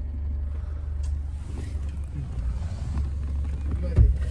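Steady low rumble of a 4WD SUV's engine and drivetrain heard from inside the cabin as it drives along a rough mountain track, with a few faint knocks.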